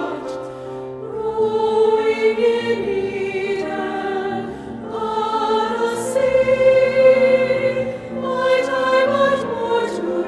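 A choir singing held chords in phrases of a few seconds, with short breaks between phrases about a second, five seconds and eight seconds in.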